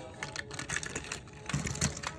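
Plastic Lego train pieces clicking and rattling as they are handled and pulled off the track, with a few louder knocks near the end.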